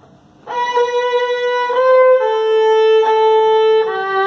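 Solo violin, bowed, playing the closing phrase of a hymn: a held B, a short quick C (the eighth note), two sustained A's, then a G entering near the end to close on the tonic.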